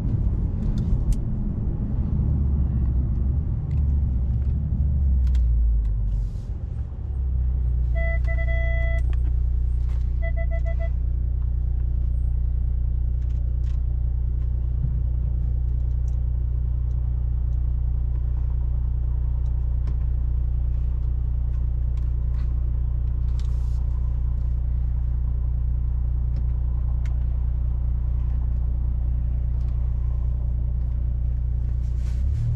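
Brabus-tuned Mercedes-Benz CLS engine heard from inside the cabin, its note falling over the first several seconds, then idling steadily. Shortly after it settles, two short runs of rapid electronic beeps sound a couple of seconds apart.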